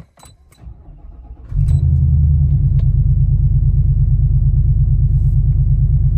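Y62 Nissan Patrol's 5.6-litre V8 starting from cold about a second and a half in, heard from inside the cabin. It fires with a brief flare, then settles into a steady idle rumble.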